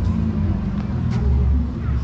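Motor vehicle engine running nearby, a low steady rumble, with a brief click about a second in.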